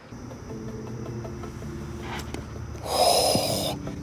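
Quiet background music with sustained tones, and a short breathy, hissing whoosh near the end.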